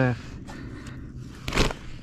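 A single short thud-like scuff about one and a half seconds in, from handling gear or the cooler bag on the kayak, over low steady background noise.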